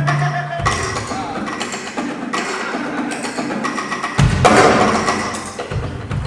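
Jazz drum kit played with sticks: quick strikes on drums and cymbals, with a heavy accent about four seconds in where a bass-drum hit and cymbal crash ring out and fade.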